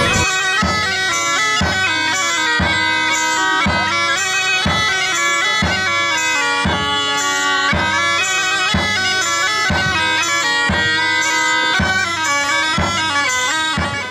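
Two bagpipes playing a lively tune together over a steady drone, with a low thump keeping time about once a second.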